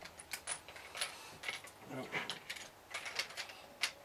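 Small LEGO plastic pieces clicking and clattering as a droid's parts and little barrel containers are handled and pressed into slots: a string of light, irregular clicks, with a sharper click just before the end.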